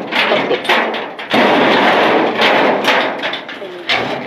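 Loud thumping and rattling of a workshop door being forced open, with men's voices over it.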